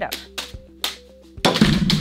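Light background music with a steady melody and drum hits, then a loud burst of a woman's laughter near the end.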